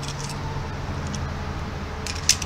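Steady low hum of background traffic, with a few faint light clicks.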